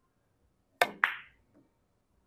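Carom billiards cue tip striking the white cue ball for a draw shot, then about a quarter second later a sharper click with a brief ring as the cue ball hits a red object ball.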